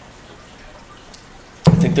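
A quiet sip from a cup over a low, steady hiss, then a man's voice starts near the end.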